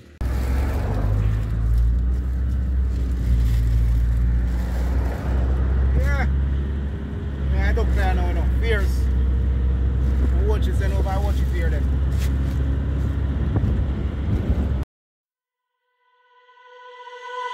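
Steady low rumble of a moving car's engine and tyres heard from inside the cabin, with voices talking in the background from about six seconds in. It cuts off suddenly about a second before the end.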